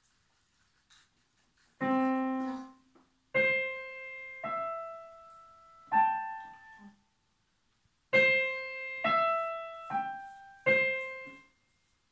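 Digital piano played slowly by a beginner: eight separate single notes in two short, halting phrases, with silences before, between and after them.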